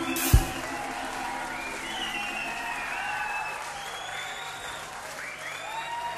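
A live reggae band's last hit as the song ends, then the audience applauding and cheering.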